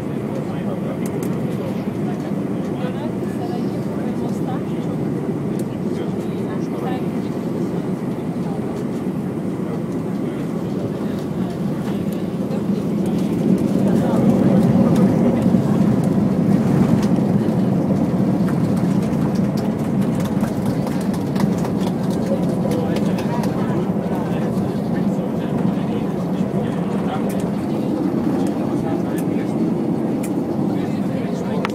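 Airbus A320 cabin noise during landing: a steady rumble of airflow and engines on short final, swelling louder about halfway through as the airliner touches down and decelerates on the runway with its spoilers raised, then easing a little during the rollout.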